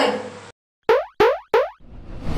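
Cartoon 'boing' sound effects from an animated logo sting: three short springy tones in quick succession, each sweeping sharply up in pitch, followed near the end by the start of a whoosh.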